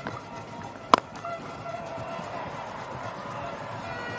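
A single sharp crack of a cricket bat striking the ball about a second in, over a steady stadium crowd and faint background music.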